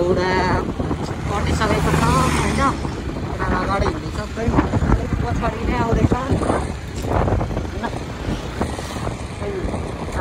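A motorcycle riding along a road, its engine running under a rumble of wind on the microphone, with people's voices talking loudly over it in bursts.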